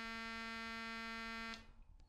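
Elektor Formant VCO module sounding a steady buzzy tone at one unchanging pitch, which cuts off suddenly about one and a half seconds in. The oscillator is running again on a crude fix of its coarse frequency potentiometer's loose terminal.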